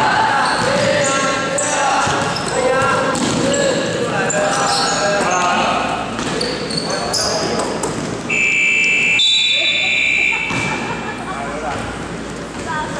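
Basketball dribbling and short high sneaker squeaks on a wooden gym floor under shouting voices, then a scoreboard buzzer sounds once, a steady tone held about two seconds, starting about eight seconds in.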